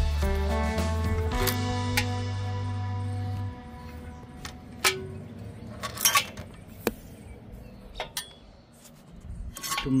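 Background guitar music for the first few seconds, then quieter. After that come a few sharp metallic clicks and clinks as the old clutch cable is worked out of its fittings by hand.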